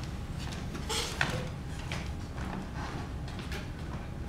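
Quiet movement on a wooden stage over a steady low hum: a brief creak or scrape about a second in as an actress gets up from a chair, then light footsteps about twice a second.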